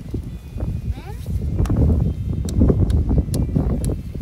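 A hammer tapping a sap spile into a drilled hole in a maple trunk: about six short, sharp taps in the second half, over a heavy low rumble.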